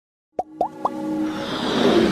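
Three quick cartoon plop sound effects, each a short upward-sweeping blip, about a quarter second apart, as animated title letters pop into place. A music swell then builds and grows louder toward the end.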